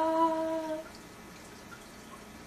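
A woman's voice holding a single sung note, steady after a slight upward slide, that stops about a second in; faint room tone follows.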